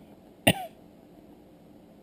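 A person coughs once, short and sharp, about half a second in.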